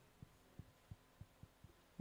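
Near silence: room tone with a faint hum and about six faint, low soft knocks spaced roughly a third of a second apart.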